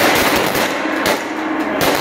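Many handheld confetti poppers going off at once in a dense crackle of pops, with a struck gong ringing steadily underneath.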